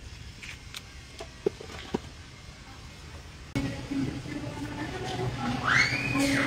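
Quiet store room tone with a few faint clicks. About three and a half seconds in, a sudden louder din of children's voices starts, and near the end a child gives one high squeal that rises and falls. The kids are loud.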